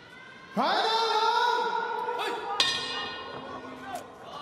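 A long, drawn-out shouted call starts about half a second in, rising in pitch and then held steady. About two and a half seconds in comes a single sharp ring that fades: the bell starting the round in the kickboxing ring.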